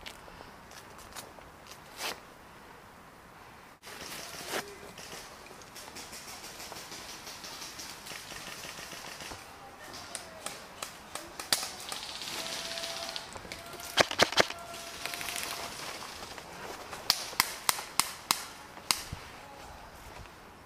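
Airsoft guns firing sharp pops: single shots at first, then three loud ones close together and a quick run of about six near the end. Dry leaf litter rustles and crunches underfoot throughout.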